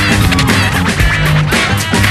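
Old-school hip-hop beat playing without rapping: looping drums and bassline between verses.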